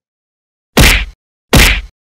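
Two loud cartoon whack sound effects, about three-quarters of a second apart, the first coming about three-quarters of a second in.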